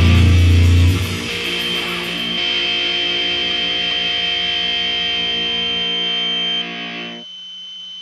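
Recorded doom/sludge metal: the full band plays a heavy distorted riff, then stops about a second in. A distorted electric guitar chord is left ringing with a steady high whine of feedback, fading down near the end as the song closes.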